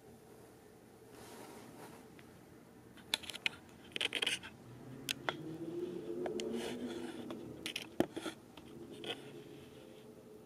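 Scattered small clicks, taps and scratches of fingers and fingernails handling a small spray bottle held close to the microphone, with several sharp clicks from about three seconds in.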